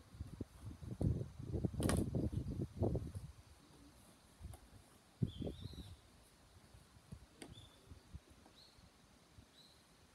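Dull low knocks and rumble with one sharp click over the first three seconds, and another knock about five seconds in, from the handheld camera being moved. A few faint, short high bird chirps sound from about five seconds in.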